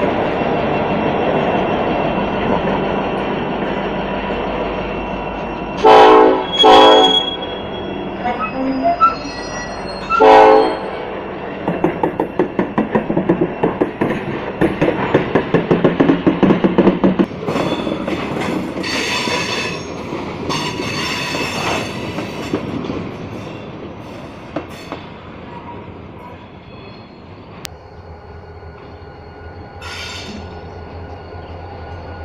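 Ferromex freight train rolling slowly past close by, with a steady diesel locomotive rumble. The horn sounds three times, two short blasts about six and seven seconds in and a third near ten seconds. Then the freight car wheels click rapidly over rail joints and squeal in the middle of the passage before the sound fades.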